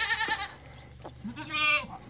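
A young male goat bleating twice: a wavering cry that trails off just after the start, and a second, shorter one about one and a half seconds in. It is crying as an elastrator castration band is released around its scrotum.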